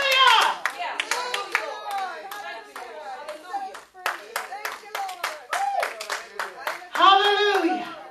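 Repeated hand clapping, with voices calling out over it, and a loud drawn-out vocal cry about seven seconds in.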